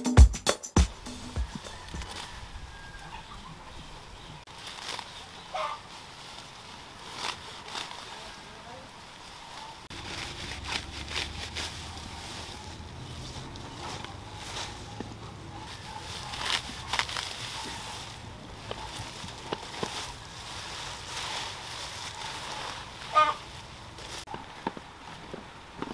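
Rustling and scattered snaps and crackles of tall mombasa grass being gathered and cut by hand, with a low rumble from about ten seconds in and a short high call near the end.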